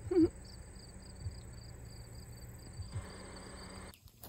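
Insects chirping in a steady repeating pulse over a continuous high-pitched drone. The end of a woman's short laugh comes just after the start and is the loudest sound.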